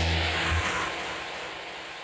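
The end of an electronic TV show ident: a deep bass note cuts off about half a second in, leaving a whooshing sweep that fades away.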